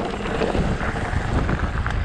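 Wind buffeting the camera's microphone over the rumble and rattle of a 29er mountain bike's tyres rolling fast down a rocky dirt trail.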